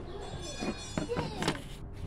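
Indistinct voice, not made out as words, with two sharp knocks about a second in and at a second and a half as the part is handled.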